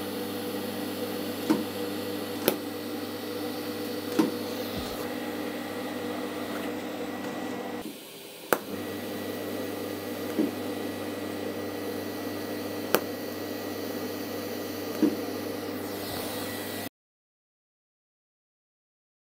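TIG arc from an R-Tech TIG261 inverter welder tack welding stainless steel strip: a steady buzzing hum with hiss, in two runs of about eight seconds with a short break between them, and a few sharp clicks. The sound cuts off suddenly about a second before the end.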